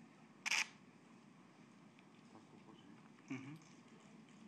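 A quick burst of camera shutter clicks about half a second in, over quiet room tone, with a fainter short sound a little after three seconds.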